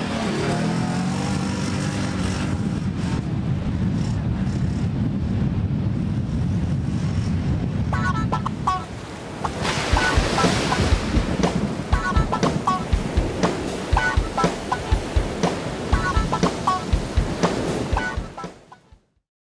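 2010 BRP Can-Am quad bike's engine running as it rides across the sand, with wind on the microphone. About eight seconds in, a theme tune with a steady beat takes over and fades out at the end.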